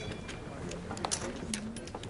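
Faint, scattered clicks of clay poker chips being handled at the table, a few times a second at irregular spacing, over low background voices.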